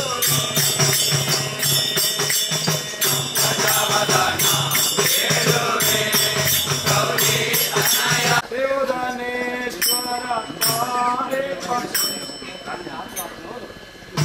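Devotional group singing with frame drums and small hand cymbals beating a steady, fast rhythm. About eight seconds in, the drumming stops abruptly and voices go on chanting a mantra, with a few scattered cymbal clinks, fading toward the end.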